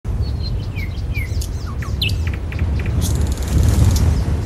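Birds chirping and calling in quick short notes over a steady low rumble. About three seconds in, a bright hiss comes in and grows.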